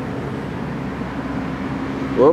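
A steady low mechanical hum over an even background rumble, like distant city traffic.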